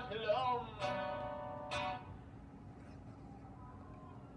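A man sings a last sung phrase over acoustic guitar. Then two strums on the acoustic guitar, about a second apart, leave a chord ringing that fades out about halfway through, leaving a low hiss. The sound is heard re-recorded by phone off a computer's speakers.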